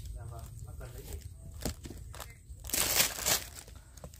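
Plastic-wrapped extension cord being handled: faint crinkling and clicks, with a louder rustle about three seconds in.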